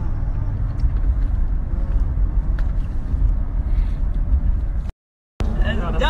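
Car driving at highway speed, heard from inside the cabin: a steady low road-and-engine rumble that drops out abruptly for a moment near the end.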